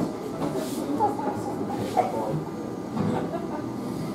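Steady rumbling room noise of a club hall with a few brief, indistinct voices about one and two seconds in.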